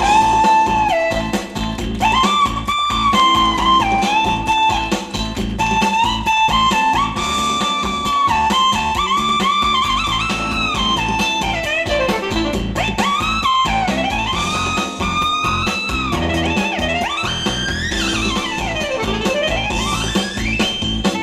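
Band backing track with an electric guitar taking the lead over bass and drums; its melody is full of bent notes and long sliding glides.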